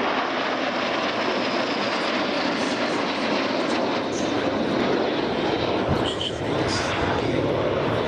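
A formation of Aero Vodochody L-39 Albatros jet trainers flying past, the steady rushing noise of their turbofan engines filling the sound.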